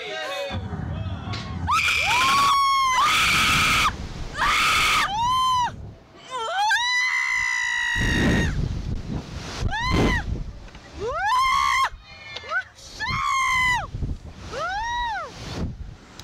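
Riders screaming during a Slingshot reverse-bungee launch: a string of about ten loud, high screams, each rising and falling in pitch, with rushing wind noise on the microphone underneath.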